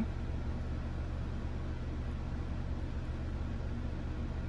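A steady low hum of background room noise, even throughout, with no distinct clicks or knocks.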